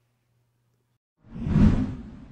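A whoosh sound effect for an animated logo transition: silence, then about a second in a rushing swish that swells quickly and fades away.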